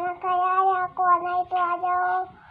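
A young girl's voice singing a slow tune in long, steady held notes, phrase after phrase with short breaks between.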